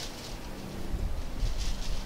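A golf putter striking the ball with a faint click at the start, then a murmur of golf spectators that rises as the putt rolls toward the hole.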